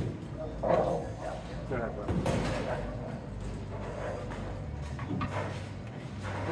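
Bowling alley ambience: indistinct chatter of several voices over a steady low rumble, broken by a few sharp clatters, the loudest about two seconds in, typical of pins being struck on nearby lanes.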